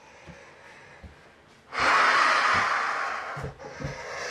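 A person's loud, breathy gasp close to the microphone about two seconds in, lasting over a second, then a second shorter breath near the end.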